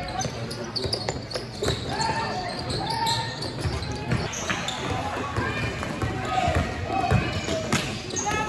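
Sounds of a basketball game in a large indoor gym: a basketball bouncing on the court, with scattered knocks from play and players and spectators calling out indistinctly.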